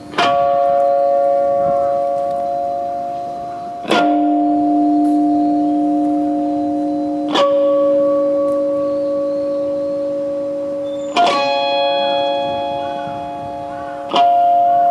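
Amplified Fender Telecaster electric guitar playing four slow chords, each about three to four seconds apart. Each chord is struck once and left to ring, fading slowly before the next.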